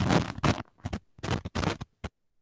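Loud scraping, crackling noise on a video-call microphone line, coming in several separate bursts and cutting off suddenly near the end.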